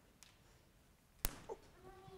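A quiet room with a single sharp click a little past halfway, followed by a brief faint squeak and faint, distant voices near the end.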